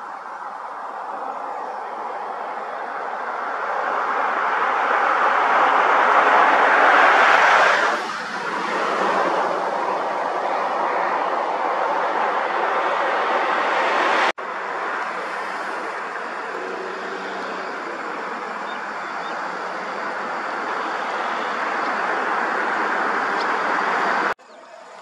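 Road traffic noise of engines and tyres. One vehicle builds up and passes close, falling away sharply about eight seconds in. After a sudden cut, a steady run of engine and tyre noise follows.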